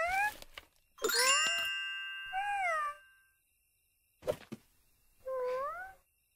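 Cartoon sound effects: a short high rising squeak, a bright chime struck about a second in that rings on for a couple of seconds, then two squeaky, wavering up-and-down calls from an animated character.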